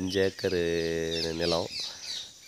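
A man's voice drawing out one long sound for about a second, with small birds chirping in the background.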